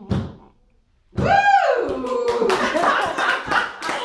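A short final sung note, a pause, then a loud whoop just over a second in, rising and falling in pitch, followed by a small audience clapping, laughing and talking.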